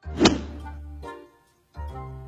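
Background music with a low bass line, broken by a single loud thump about a quarter second in. The music drops out briefly and comes back near the end.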